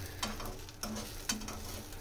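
An egg omelette frying with a faint sizzle in a non-stick pan, while a steel spoon scrapes and clicks against the pan several times.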